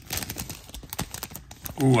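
Trading cards being handled and slid out of a torn foil pack wrapper: a run of small crinkles, rustles and clicks. A short spoken "ooh" comes near the end.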